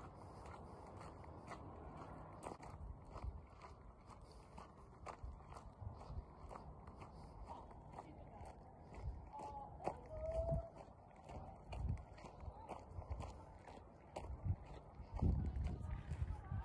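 Footsteps crunching on a gravel path at a walking pace, about two steps a second. Low thumps and rumbles of wind or handling on the phone's microphone come in during the second half.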